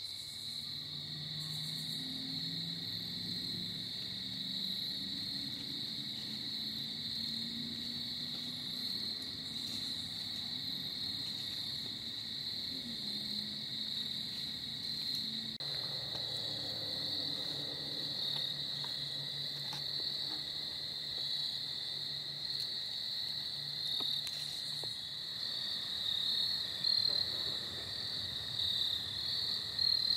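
Crickets chirping in a steady, continuous evening chorus, growing more pulsed near the end. A faint low hum sits underneath for the first half and fades out about halfway through.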